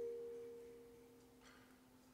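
Mallet percussion notes ringing on and dying away over about a second and a half in a quiet passage of concert band music, leaving a faint low held tone.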